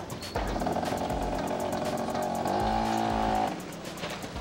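A car's tyres screeching in one sustained squeal of about three seconds, with a lower engine-like tone joining near the end, over background music with a steady beat.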